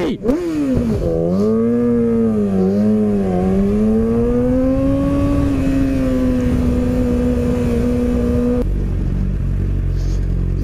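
Yamaha YZF-R6 sport bike's inline-four engine under way. Its note rises and falls several times with the throttle, then holds steady, then drops to a low idle near the end.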